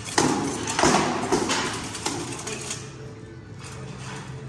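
Armoured sword sparring: a quick run of blade and armour impacts, the two loudest within the first second, then lighter clashes and clatter that die away over the next two seconds.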